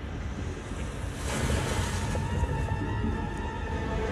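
Ambient soundtrack sound design: a surf-like noise that swells about a second in, with low held tones coming in under it as a dark music cue begins.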